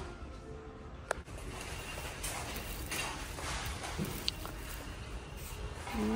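Handling noise of goods on a store shelf: a sharp knock about a second in, then soft rustling and a few light taps over faint background hum.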